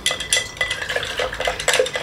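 Wooden stick stirring methoxide in a glass jar: a rapid, irregular run of clicks and scrapes against the glass while the solids in the mix dissolve.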